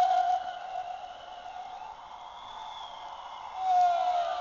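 Animated floating ghost Halloween prop playing its eerie soundtrack: a long, wavering ghostly tone that fades about half a second in, a quieter stretch with a thin high gliding tone, and the tone returning loudly near the end.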